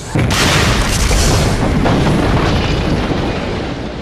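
Steam explosion of a sealed metal pressure kettle: a sudden loud blast about a third of a second in, then a long dense roar that slowly eases. The lid has blown off at about seven and a half bar and the superheated water inside is flashing instantly to steam.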